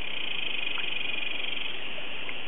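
An animal's high, rapidly pulsed trill, lasting about a second and a half, over a steady hiss.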